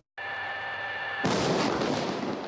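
CM-11 Brave Tiger tank firing its 105 mm main gun once, a little over a second in: a sudden loud blast followed by a long rumble. Before the shot there is a steady mechanical hum with a high whine.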